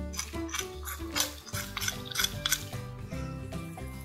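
A metal spoon scrapes and taps chili powder out of a small clay bowl, making a string of irregular clicks and scrapes. Soft background music with held notes plays underneath.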